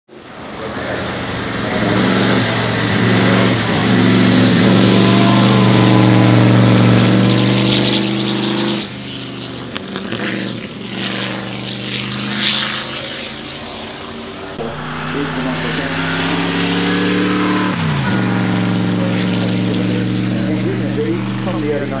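The 1934 Alfa Romeo P3 "Tipo B" Grand Prix car's supercharged 3.2-litre straight-eight engine running as the car drives past. It is loud for the first several seconds, then drops suddenly. Later the engine note rises, falls sharply just before the end, and holds steady.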